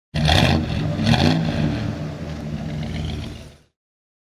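Car engine revved twice in quick succession, about a second apart, then running on more quietly and fading out.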